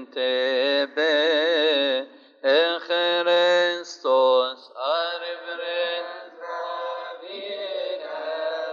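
A male cantor chanting a long, melismatic Coptic liturgical hymn. His held notes waver with strong vibrato and break off in short pauses for breath. From about five seconds in, the sound thickens as more voices chant along.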